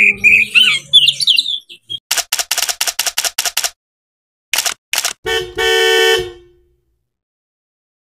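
Oriental magpie-robin singing a run of whistled phrases. After about two seconds it gives way to a burst of rapid keyboard-typing clicks, then two single clicks, then a buzzy horn-like tone lasting about a second.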